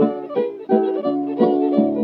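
Acoustic blues guitar picking a short fill of single plucked notes between sung lines, in the narrow, dull sound of an old record.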